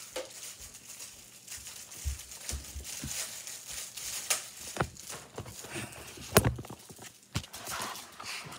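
Irregular clicks and knocks from objects being handled, with a few low thumps about two seconds in and one louder knock about six seconds in.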